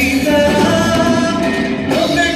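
Live band playing a Punjabi Christian worship song, a man singing lead into a handheld microphone over guitar, keyboard and drum kit.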